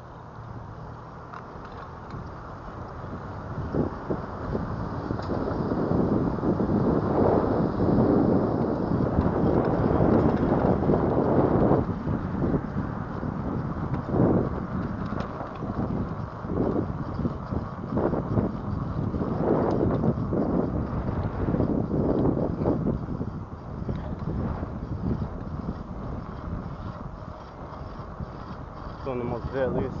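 Wind buffeting the microphone and tyre rumble from an electric bicycle riding over a cracked concrete sidewalk, with irregular knocks as the wheels cross cracks and slab joints. The noise builds over the first few seconds as the bike picks up speed.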